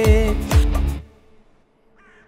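Film song with a held sung note over a steady beat, which stops abruptly about a second in, leaving it quiet.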